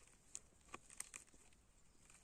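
Near silence with a few faint, brief clicks and rustles as a hand grips a porcini mushroom's cap and stem in the moss.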